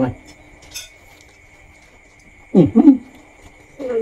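A man eating makes two short 'mmm' hums of enjoyment through closed lips, each falling in pitch, about two and a half seconds in, and starts another near the end. A brief soft noise from the food comes about a second in, and a faint steady high whine sits underneath.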